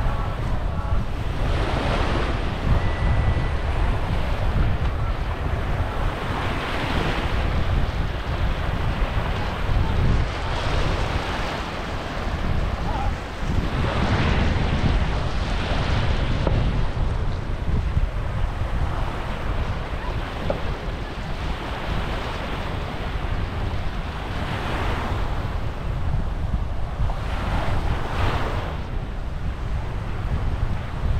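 Small sea waves breaking and washing up a sandy shore, swelling every few seconds, over a constant low rumble of wind on the microphone.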